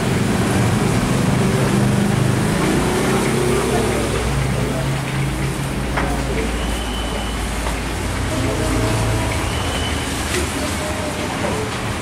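Indistinct voices over a steady rumble of road traffic, with a couple of short clicks.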